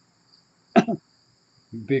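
A man's single short cough about three-quarters of a second in, over a steady high insect chirring.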